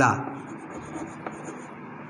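Chalk scratching on a blackboard as a word is written, with a few faint taps of the chalk.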